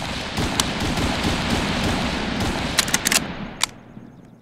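Rapid gunfire sound effect: a dense crackling volley with a few sharper cracks near the end, fading out over the last second.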